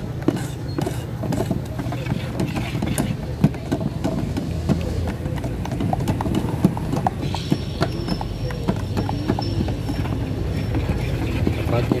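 Two stir sticks stirring thick epoxy enamel paint in two metal gallon cans at once, knocking and scraping against the can walls in an irregular run of clicks and knocks, over a steady low hum.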